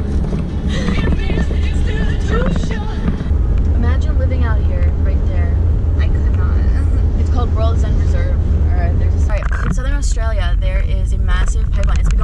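Car driving along at road speed: a steady low road and engine rumble. Music and voices sit over it.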